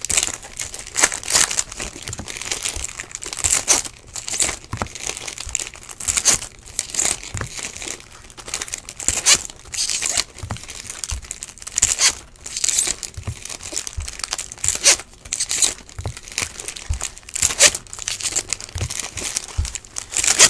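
Foil wrappers of 2015 Topps Valor football card packs being torn open and crinkled by hand, in quick, irregular bursts.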